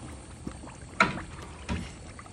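Wooden spoon stirring chili flakes in hot oil in a pan, the oil sloshing and bubbling, with a sharp knock of the spoon about a second in and a lighter one near the end.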